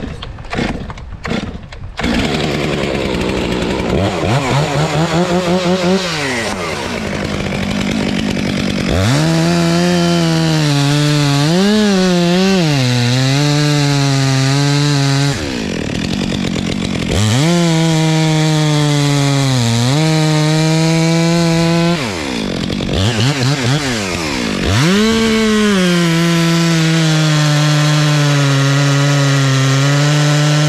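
Gas chainsaw cutting into a pine trunk at full throttle, after a few short revs of the throttle at the start. Its pitch sags as the chain bites, it drops back twice in the middle, then it runs through a long steady cut near the end.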